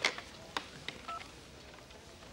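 Corded desk telephone being picked up and dialled: a clatter of the handset at the start, a few light button clicks, and one short touch-tone beep about a second in.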